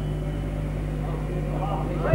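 Steady low electrical mains hum from the hall's sound system, with faint voices underneath.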